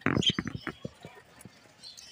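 A quick run of sharp clicks and taps, densest in the first half second, then a few scattered ones.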